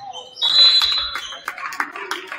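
Referee's whistle blown once, a loud, shrill blast lasting under a second, followed by voices and noise in the gym.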